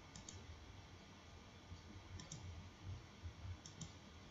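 Faint computer mouse clicks, coming in quick pairs three times, over a low steady hum.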